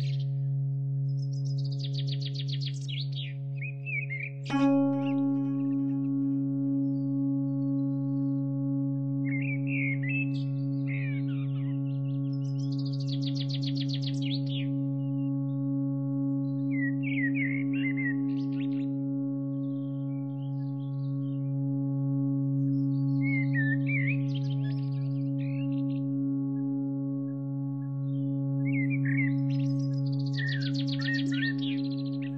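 Ambient meditation drone: a steady low hum with overtones, with a singing bowl struck about four and a half seconds in that rings on steadily. Over it, recorded birdsong comes in short bursts of chirps and rapid trills every few seconds.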